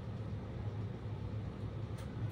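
Steady low hum with a faint hiss: room background noise during a pause in speech.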